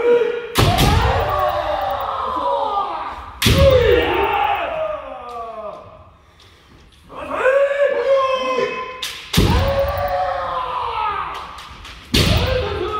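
Kendo sparring: long, pitch-bending kiai shouts, broken three times by a sharp crack of a strike, a bamboo shinai hitting armour together with a foot stamping on the wooden floor. The shouts carry on after each strike, with a short lull in the middle.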